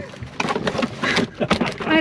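Cardboard box, plastic bag and paper rustling and knocking while a boxed citrus juicer is lifted and pulled out, with brief bits of a voice.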